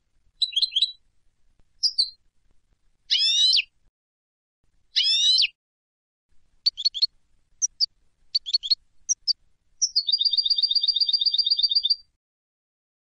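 European goldfinch singing: short separate twittering phrases and two harsher buzzy notes, followed from about ten seconds in by a rapid, even trill.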